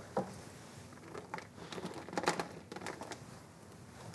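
Light handling noises: scattered soft clicks and rustles as a short piece of insulated wire is picked up and handled at a workbench.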